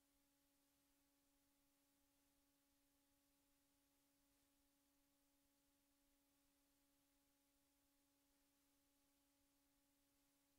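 Near silence, with only a very faint steady hum.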